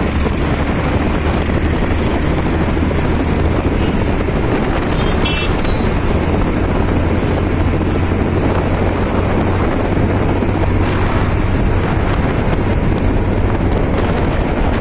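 Motorcycle riding at speed in traffic: steady wind noise on the microphone over the low hum of the engine and tyres. A brief high tone sounds about five seconds in.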